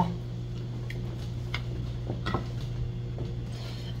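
Quiet room tone with a steady low hum, broken by a few faint light taps.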